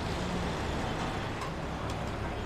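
Steady low traffic rumble of passing road vehicles.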